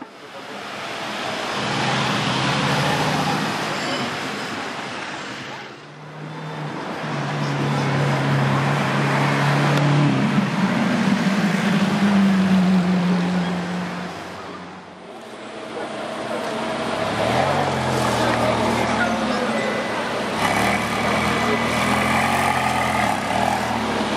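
Supercar engines running on a busy street over several short cuts, with crowd voices in the background. In the middle section a Lamborghini Aventador's V12 revs and rises in pitch.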